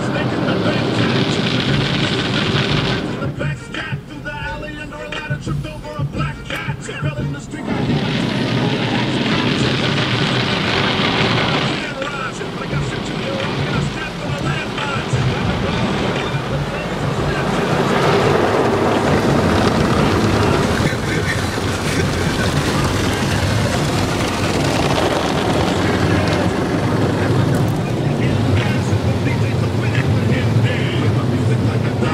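Automatic car wash heard from inside the car: water and foam spraying on the windshield and hanging cloth strips sweeping over the body, with music with rapped vocals playing. The spray is loudest for the first three seconds and again from about eight to twelve seconds in.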